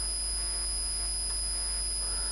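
Steady electrical noise of the recording between spoken phrases: a constant high-pitched whine and a low hum beneath it.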